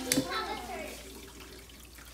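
A small battery-powered transfer pump's steady motor hum stops right at the start, with a sharp click just after. A little water gurgles and trickles briefly, then fades.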